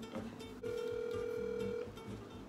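Telephone ringback tone through a phone's speakerphone while an outgoing call rings: one steady tone of a little over a second, starting about half a second in.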